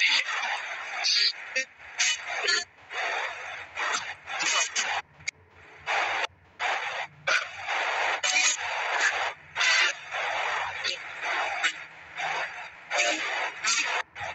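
Ghost box radio sweep: bursts of static and scraps of broadcast sound chopping in and out about twice a second.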